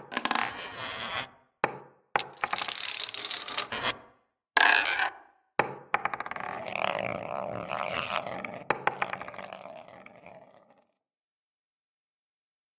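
Animated end-card sound effects of balls rolling, scraping and knocking, in several bursts with short gaps and sharp clicks between them. They cut off sharply near the end.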